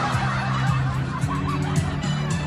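Music with steady, held bass notes playing loudly, with someone briefly laughing over it.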